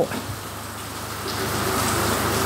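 Heavy rain falling, a steady hiss that grows a little louder in the second half, with a faint low hum beneath it.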